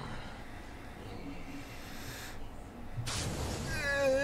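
Faint low background noise, then near the end a high, wavering cry that rises and falls in pitch.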